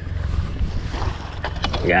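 Wind buffeting the microphone over a low, steady rumble on a small fishing boat, with a few sharp knocks about a second and a half in.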